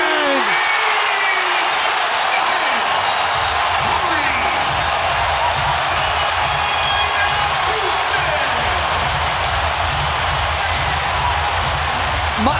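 Home arena crowd roaring and whooping in celebration of a go-ahead three-pointer. From about a second and a half in, music with a steady low beat plays under the crowd.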